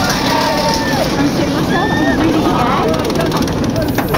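Riders' voices, shouts and squeals over a steady noisy rumble from the roller coaster car as it tips over the edge of the vertical drop.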